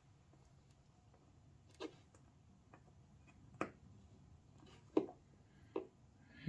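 Four faint, sharp clicks spread over a few seconds, the third the loudest: a bent wire and fingertips tapping against the model track's rails and a brass screw as the wire is fitted into the screw's slot.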